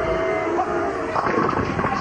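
A bowling ball rolling into the pins and knocking them all down for a strike, with the crash of the pins about a second in, over a crowd's voices.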